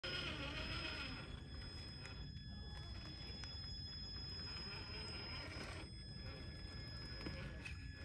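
Traxxas TRX4 High Trail RC crawler on its stock brushed motor crawling slowly over rocks and roots: a faint, steady high motor whine over low drivetrain and tyre rumble.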